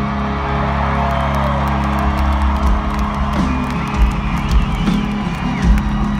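Live country-rock band holding a long sustained chord with a few drum hits in the second half while the arena crowd cheers, with whoops and whistles rising over it.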